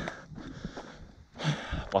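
A man's short, sharp breath drawn in through the nose, a sniff about one and a half seconds in, during a pause in speech. Otherwise only faint low rumble.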